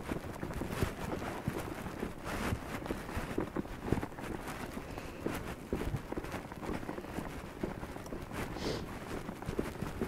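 A horse's hooves stepping irregularly on grass pasture, a scatter of soft thuds as he shuffles and turns about.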